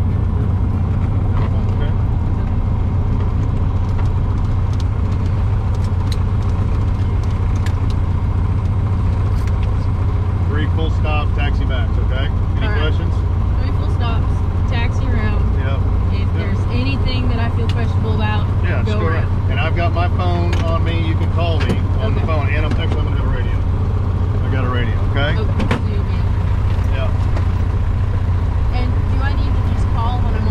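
Single-engine light airplane's piston engine idling with a steady low drone, heard inside the cabin. Two people talk over it from about ten seconds in until near the end.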